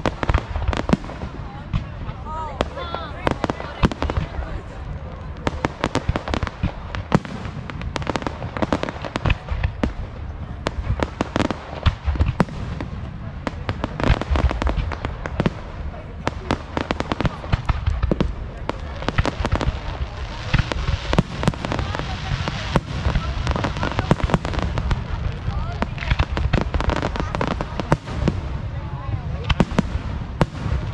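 Aerial fireworks shells bursting in quick succession, with booms and crackles throughout and a spell of dense crackling about two-thirds of the way in.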